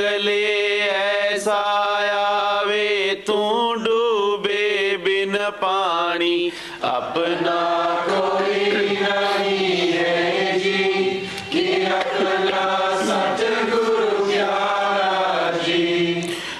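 A voice chanting a devotional hymn in long, ornamented sung phrases, with a brief pause about six seconds in, over a steady low hum.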